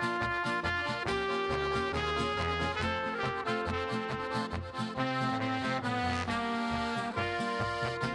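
Instrumental break of an upbeat Slovenian folk-pop song: trumpet and clarinet playing the melody over accordion and guitar, with a steady beat.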